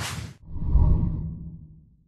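Whoosh sound effect of a logo intro: a short sharp swish at the start, then a deeper whoosh that swells about half a second in and fades away over the next second.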